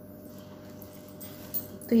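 Light handling of a bundle of paper banknotes, with a few faint paper clicks over a low steady hum. Near the end a woman's voice comes in, falling in pitch.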